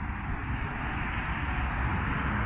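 Wind buffeting the microphone outdoors: a steady rushing noise with an uneven low rumble.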